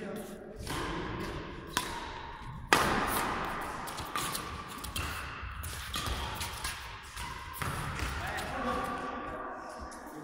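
Badminton rally: sharp cracks of rackets striking a shuttlecock, the loudest about three seconds in, with thuds of players' footfalls on the court and voices in the hall.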